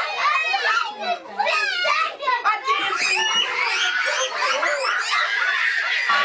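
Young children's voices shouting and calling out excitedly over one another, high-pitched and overlapping.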